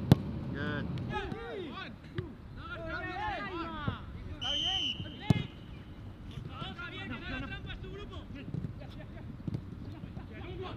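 Footballs being kicked on a grass pitch: sharp thuds, the loudest just at the start and about five seconds in, with smaller ones between. Players shout across the field, and a short high whistle-like tone sounds about four and a half seconds in.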